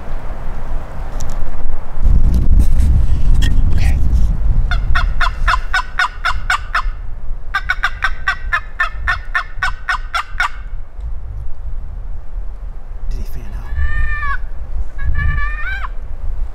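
Turkey calling from a hand-held turkey call: two long runs of quick, evenly spaced notes, about six a second, then two short yelps near the end.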